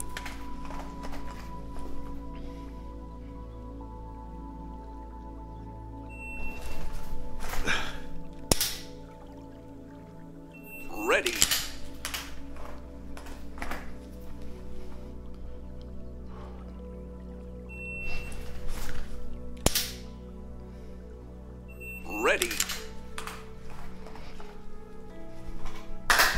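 Repeated dry-fire draws from concealment: a short electronic shot-timer beep starts each rep, followed by a second or two of clothing rustle and handling as the pistol is pulled out from under a coat. Sharp clicks of the dry-fired trigger stand out now and then. There are four repetitions, over steady background music.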